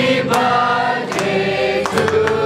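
A group of voices singing a song with music behind it, holding long notes, with a few sharp hits along the way.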